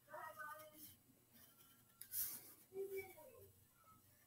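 Very faint marker strokes scratching on a drawing board, the clearest one about two seconds in, with a faint murmur of voice.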